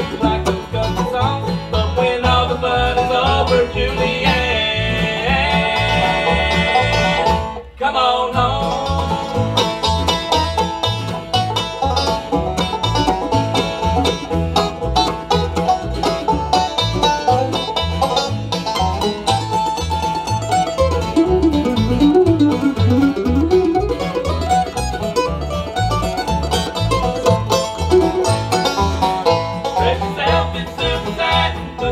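Bluegrass band playing an instrumental break: banjo picking over acoustic guitar, with an upright bass keeping a steady beat. The sound drops out sharply for a moment about eight seconds in.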